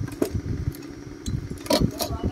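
A small engine running steadily in the background, a constant hum over an uneven low rumble, with a couple of short knocks.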